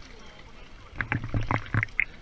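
Water splashing and sloshing against a camera held at the surface, with a run of quick splashes in the second half.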